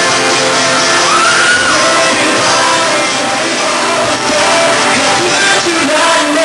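Live acoustic pop performance: a male singer with an acoustic guitar being strummed.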